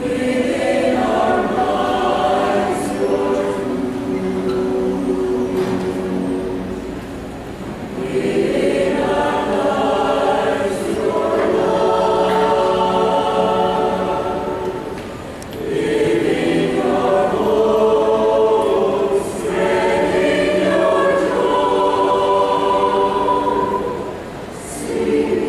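Mixed choir of men's and women's voices singing a worship song together, in long sustained phrases with short breaks between them.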